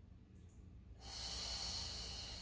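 A person's long, audible exhale starting about a second in, hissing with no pitch, as she breathes out while drawing her leg back during a Pilates leg-extension exercise.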